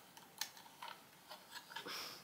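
Faint, scattered clicks and taps of hard plastic parts being handled as a small LED video light is fitted to its screw-on clip mount.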